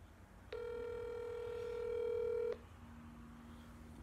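Telephone ringback tone heard through a phone's speaker: one steady ring lasting about two seconds, starting about half a second in, the sign that the outgoing call is ringing at the other end.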